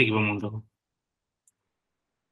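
A man's voice speaking for about the first half-second, then cutting off into silence.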